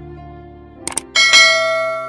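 Subscribe-button animation sound effect over soft background music: a quick double mouse click a little under a second in, then a bright notification bell ding that rings on and slowly fades.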